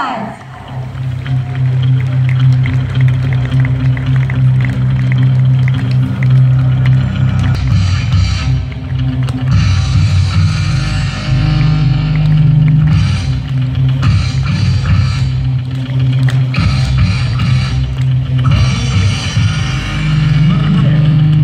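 Loud music with a heavy, steady bass played throughout.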